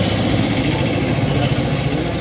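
An engine idling steadily close by.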